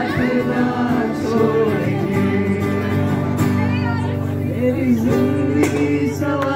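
Live acoustic guitar playing chords while voices sing a melody into microphones.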